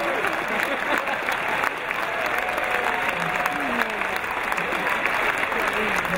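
Audience applauding: a dense patter of many hands clapping, with scattered voices from the crowd.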